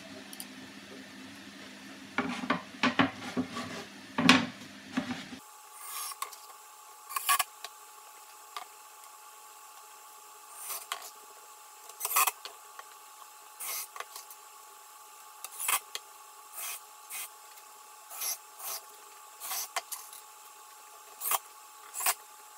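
Plywood panels knocked and shifted into place, then a cordless drill/driver pre-drilling and driving screws into the plywood in short bursts, roughly one a second, from about five seconds in.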